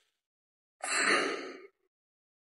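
A person sighing once: a short breathy exhale about a second in, lasting under a second.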